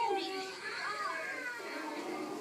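Children's voices talking and calling out, over a background murmur of other voices.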